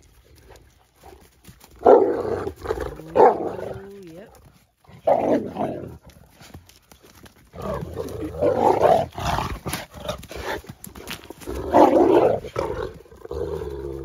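Adult male Cane Corso growling and snarling in four or five loud, rough bursts, with a short falling whine about three seconds in. It is a warning to a year-old female puppy who is crowding his face and getting in his space.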